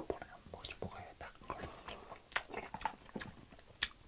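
Scattered soft clicks and rustles close to the microphone, irregular and with no steady rhythm, over a quiet background.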